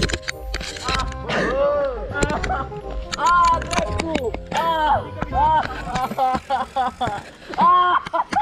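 People's voices calling out, rising and falling in pitch, over music.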